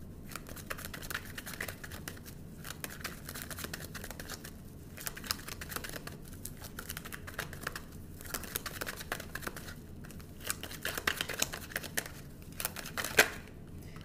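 Tarot deck being shuffled by hand: a continuous run of soft, papery card slides and clicks, with one sharper snap about a second before the end.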